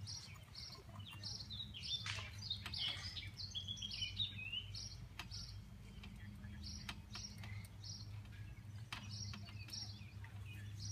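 Birds chirping: short high chirps repeated about twice a second, with a run of warbled, gliding notes a few seconds in, over a steady low hum.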